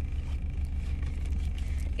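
Steady low drone of a car, heard from inside its cabin.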